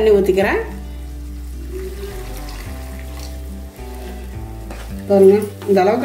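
Chopped onions and tempering sizzling in oil in a kadai, with water poured in and stirred with a wooden spatula, under soft background music of held notes.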